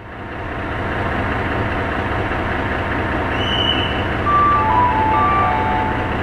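A MÁV V43-class ("Szili") electric locomotive hauling an InterCity train at the station, giving a loud, steady running and rolling noise with a low hum that builds up over the first second. Several brief high-pitched squeals sound about three to five and a half seconds in, typical of the brakes on a train drawing in.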